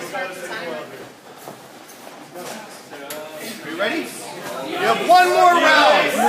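Indistinct chatter of voices echoing in a large gym hall, growing louder in the last second or two.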